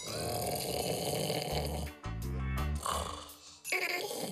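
A man snoring loudly in long drawn snores: one through the first two seconds, another about three seconds in, and a third starting near the end, over background music with a repeating bass line.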